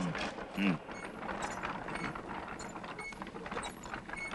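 Sound effect of teeth crunching and grinding on iron beans: a fast, continuous run of dry, ratchet-like clicks and grating.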